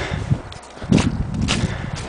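Running footsteps in snow: irregular dull crunching thuds, with sharper knocks about one second in and a second and a half in.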